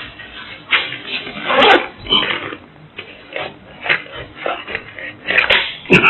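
Tools being handled in a soft tool bag: a series of short knocks, clatters and scrapes at irregular intervals.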